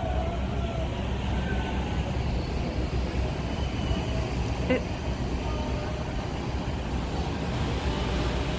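Steady low rumble of a large ship's engines, with a few faint distant calls above it.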